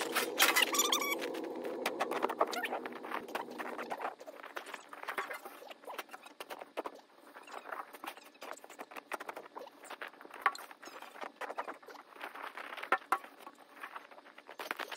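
Snow shovelling played back at five times speed: a rapid, dense patter of crunches and scrapes from shovel and boots in snow. A steadier low drone runs under it for the first few seconds.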